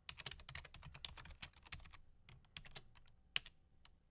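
Faint computer keyboard typing: a quick run of keystrokes for about two seconds, then a few scattered key presses, one of them louder a little after three seconds.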